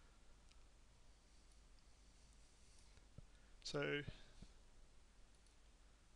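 A few faint, separate computer mouse clicks over quiet room tone with a low steady hum.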